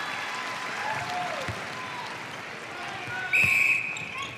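Arena crowd cheering and applauding a goal in a netball match. About three seconds in, a short, loud, single-pitched blast on the umpire's whistle signals the centre pass restart.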